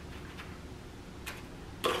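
A few faint taps and clicks of a spoon against a plastic bowl as graham cracker crumb crust is spooned into foil muffin cups.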